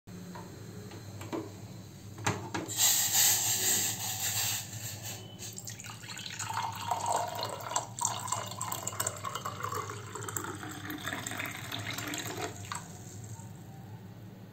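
Warm water poured from a steel pot into a drinking glass, splashing and gurgling as the glass fills. A louder hiss comes about three seconds in, and the pouring stops shortly before the end.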